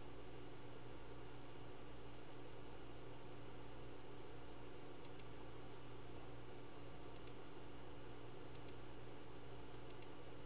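Quiet room tone with a steady electrical hum and hiss, and a few soft computer-mouse clicks in the second half, about five, seven, eight and a half and ten seconds in.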